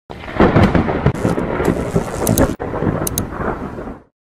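A loud rumbling noise with a hiss over it, broken by a brief dropout about two and a half seconds in and cutting off abruptly at the end.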